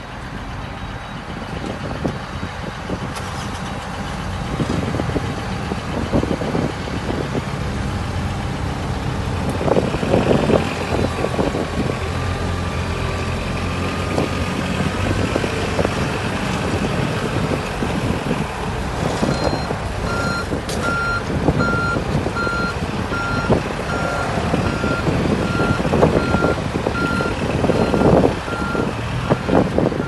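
Compact wheel loader's diesel engine running as the machine is driven, with scattered knocks and clanks. From a little past halfway its reversing alarm beeps steadily, about once a second, as it backs up.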